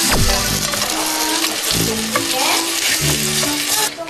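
Egg-coated bread sizzling as it fries in a nonstick pan, with a steady crackling hiss that stops near the end. Light background music plays underneath.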